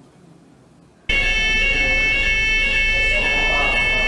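Building fire alarm sounding one continuous, steady high-pitched tone, cutting in abruptly about a second in. It is the evacuation signal of a fire drill.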